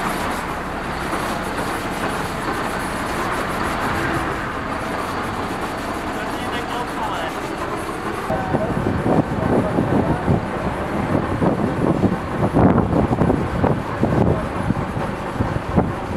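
MAN fire-brigade tanker truck running while water sprays from it onto the road surface, a steady noise that turns louder and more uneven from about halfway through.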